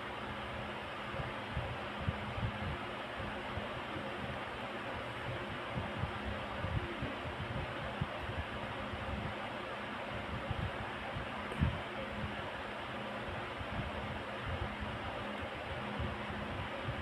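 Steady background hiss of room noise, with faint low bumps and one slightly louder bump about two-thirds of the way through.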